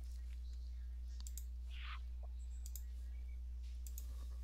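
A steady low hum with a few faint, scattered clicks, in a pause between speech.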